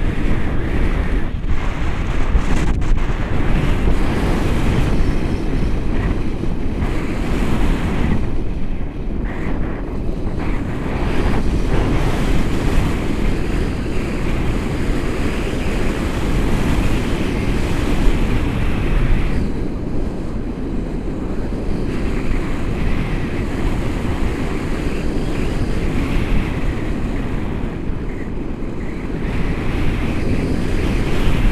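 Wind rushing over the camera's microphone in flight under a tandem paraglider: a loud, steady rush, heaviest in the low end, that swells and eases with the airflow.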